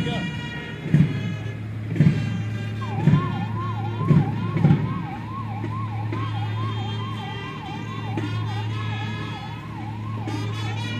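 A siren wailing in quick rising sweeps, about two a second, starting about three seconds in. Under it runs music with a drum beat about once a second.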